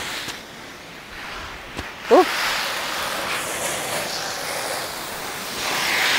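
Garden hose spraying water over vegetable plants: a steady hiss that grows louder about two seconds in and keeps going.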